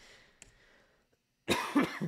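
A man coughing once, briefly, about a second and a half in, after a faint breath.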